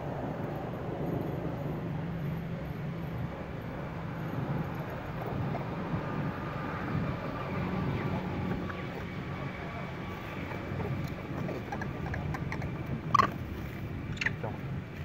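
Steady low outdoor rumble of background noise, with one short, sharp squeak about a second before the end.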